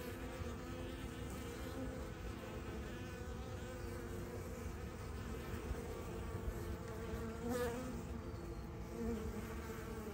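Swarm of honey bees buzzing at close range: a steady drone of many bees with several wavering pitches layered together.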